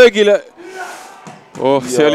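Male commentator speaking over a football broadcast, with a short pause of soft hiss in the middle before he speaks again.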